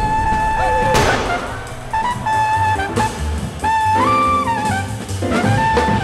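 Jazz soundtrack music: a trumpet playing long held notes over drums and bass, with a full horn-section chord about four seconds in.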